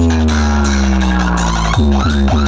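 Loud electronic dance music played through a large DJ speaker stack. A long held deep bass note slides slowly downward, then near the end it switches to quick, rhythmic bass hits that each drop in pitch.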